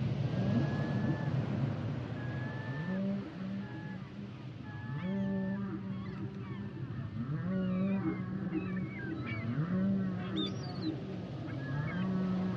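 Humpback whale song: a series of low moans, each held about a second and some sliding up as they begin, with thinner high whistles early on and higher swooping, chirping cries in the second half, over a steady low background rush.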